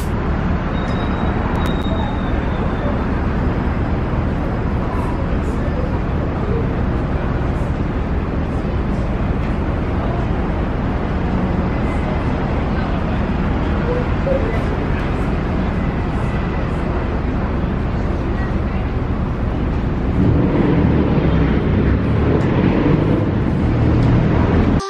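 Steady city street traffic noise, a little louder in the last few seconds.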